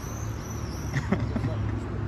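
Outdoor ambience of a busy open-air market: a steady low rumble with faint voices of people nearby, and a few high chirps in the first second.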